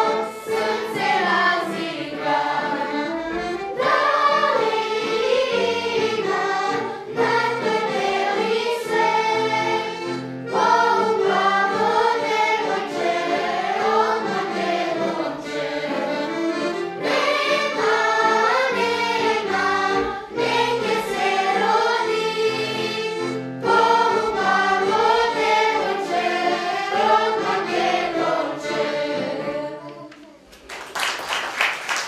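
Children's choir singing a song in phrases of a few seconds, with short breaks between them, accompanied by violin and digital piano.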